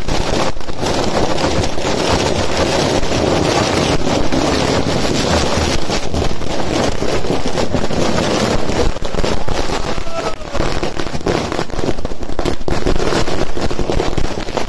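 A string of firecrackers going off on the road, a continuous rapid crackle of pops with no break.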